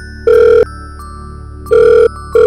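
Telephone ringing in a double-ring pattern: two short steady rings, a pause of about a second, then the next pair begins.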